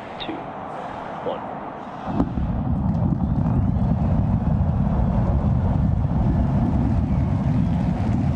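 SpaceX Super Heavy booster's 33 Raptor engines igniting for liftoff: about two seconds in a loud, deep rumble starts suddenly and then holds steady.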